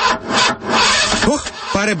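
An old car's starter motor cranking the engine over with a rasping grind, the engine not catching. A man's voice begins pleading with it to start near the end.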